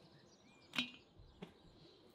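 Birds chirping in the background, with two sharp knocks, the louder one a little under a second in and a softer one soon after.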